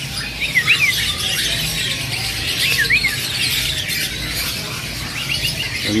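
Caged songbirds chirping. A few short up-and-down whistled phrases stand out about half a second in, around three seconds and near the end, over a steady background of many small chirps.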